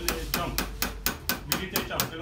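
Small jeweller's hammer tapping a chasing tool into a metal piece: an even run of light, ringing metal-on-metal strikes, about four a second.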